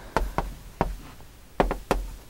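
Chalk tapping against a chalkboard while words are written: about five sharp, irregularly spaced taps.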